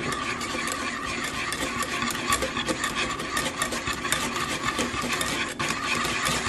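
Wire whisk beating melted white chocolate and cream in a small granite-coated metal saucepan, its wires scraping and ticking rapidly and steadily against the pan as the chocolate melts into the cream.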